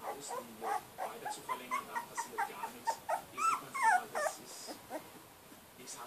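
A 17-day-old Polish Lowland Sheepdog puppy whimpering in a string of short, high squeaks that rise and fall in pitch. They are loudest about three to four seconds in, then die down near the end.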